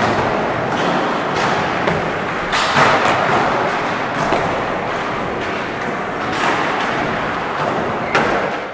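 Skateboards rolling over plywood ramps with a steady rumble of wheels, broken by several clattering thuds of boards hitting the ramp surface. The loudest thud comes a little under three seconds in.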